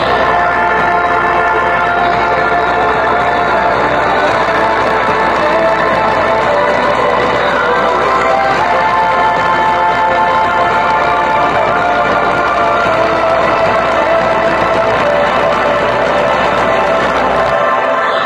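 Bass-boosted pop track played at full volume through a JBL Flip 4 portable Bluetooth speaker, with a continuous deep bass line under it. The deep bass cuts out near the end.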